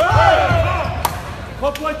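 Men shouting "Come on!" and "Go!" over dull thuds of fighters' feet on the floor mats, in a hall with reverb. One sharp smack comes about a second in.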